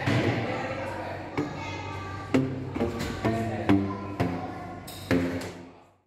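Tuned tubes of different lengths struck on their open ends with a flat paddle, each slap giving a short, hollow pitched note. About ten notes of changing pitch come in an irregular tune, and the sound fades out near the end.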